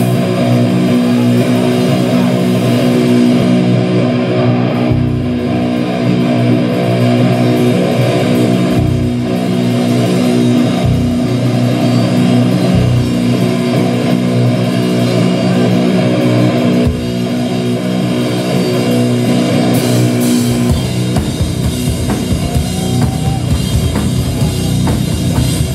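Metal band playing live: held, ringing electric guitar chords over single heavy drum hits every couple of seconds, breaking into fast, dense full-kit drumming near the end.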